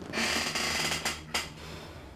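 A paper envelope being handled and opened: a rustle of paper lasting just under a second, then a short tap.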